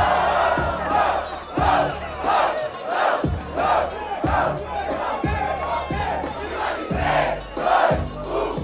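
Rap-battle crowd cheering loudly after a punchline, then shouting together in a steady rhythm, about one shout every three-quarters of a second, over a beat with a regular kick drum.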